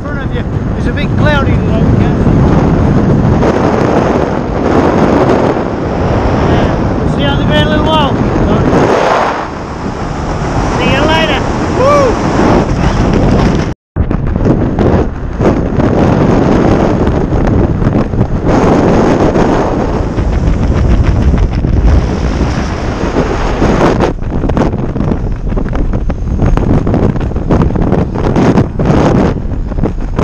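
Loud wind buffeting the camera microphone during a parachute canopy descent. A voice calls out briefly a few times in the first half, and the sound drops out for an instant about halfway through.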